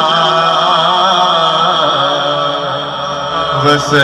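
A man reciting a naat, an Urdu devotional song, singing long melismatic lines into a handheld microphone over a steady low drone. A brief, loud noisy rush comes near the end.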